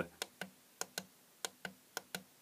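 Clicking of the buttons on a plug-in mains energy meter, pressed repeatedly to step its display through its modes: a series of small sharp clicks, several in quick pairs.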